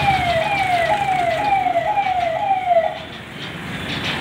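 An electronic siren-like warning tone that falls in pitch over and over, about twice a second in a sawtooth pattern. It cuts off about three seconds in, over steady street noise.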